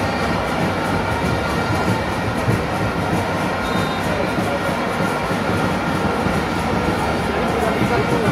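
Large stadium crowd: a steady, dense roar of thousands of voices with no let-up.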